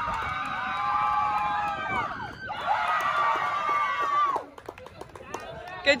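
Several young women's high voices cheering and yelling together in long, sustained calls, in two stretches that fade out about four and a half seconds in.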